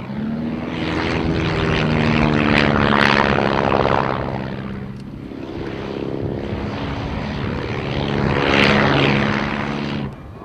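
De Havilland Tiger Moth biplane's four-cylinder inverted inline engine and propeller droning in flight, the sound swelling louder twice, about three seconds in and again near the end.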